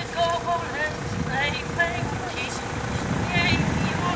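Chatter of a walking crowd outdoors: short fragments of several voices, some of them high-pitched, over a low steady rumble.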